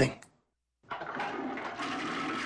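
A toilet flushing: a steady rush of water that starts suddenly about a second in, after a short silence.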